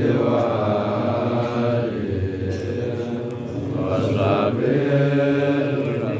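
Men's voices chanting an Arabic devotional chant together, hadra-style menzuma, with long drawn-out held notes on words of blessing on Muhammad.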